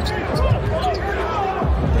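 Basketball dribbled on a hardwood court, a few dull bounces, over arena crowd noise with a voice in the background.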